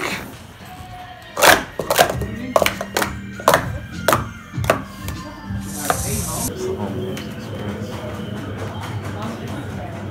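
Plastic speed-stacking cups clacking on a mat as they are stacked and collapsed: a quick run of sharp clacks over about three seconds, then a brief rushing noise. Background music runs underneath.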